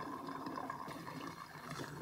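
Gasoline pouring from a red plastic gas can into the fuel tank of a Yamaha 2000-watt generator: a faint, steady trickle of liquid.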